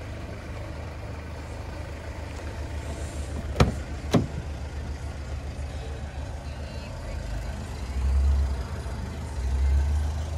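A car's rear door being opened: two sharp clicks about half a second apart as the handle is pulled and the latch releases, over a steady low rumble that swells twice near the end.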